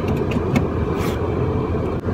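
Car engine idling, heard from inside the cabin as a steady low rumble, with a few small clicks and a brief rustle about a second in.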